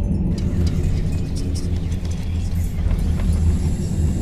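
Film soundtrack: a low, steady bass drone with faint clicks above it.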